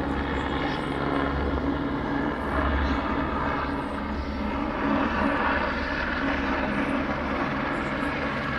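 Red light helicopter flying past, its rotor and engine a steady drone with a low rumble and slight swells in loudness.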